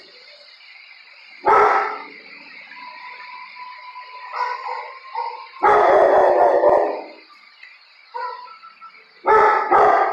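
Dogs barking in a shelter kennel, in three loud bursts: about a second and a half in, a longer one of over a second around six seconds in, and again near the end.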